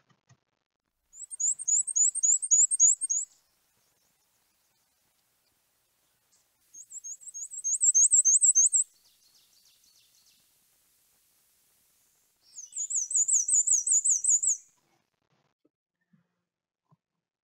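Black-and-white warbler singing three songs a few seconds apart. Each song is a run of about eight high, thin, rapidly repeated notes lasting about two seconds, the squeaky-wheel song of the species.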